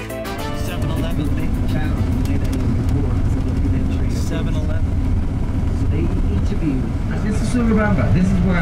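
Steady low rumble of a bus's engine and tyres heard from inside the passenger cabin. Guitar music stops right at the start, and faint passengers' voices come in near the end.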